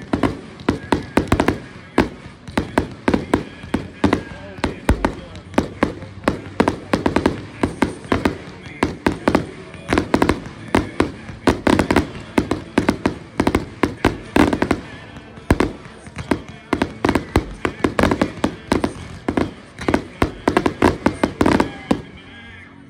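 Fireworks display: aerial shells bursting in a rapid, continuous string of bangs, several a second, for the whole stretch.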